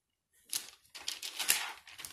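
Thin Bible pages being leafed through: a quick run of crisp paper rustles and flicks beginning about half a second in, the loudest flick near the middle.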